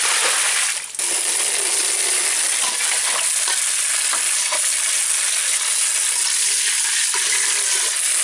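Water rushing out of a tipped bucket, then, after a short dip about a second in, a steady stream from a garden tap splashing into a metal bowl of amaranth greens as they are rinsed.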